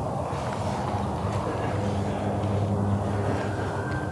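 A steady low drone like a distant engine, with rustling noise close to the microphone.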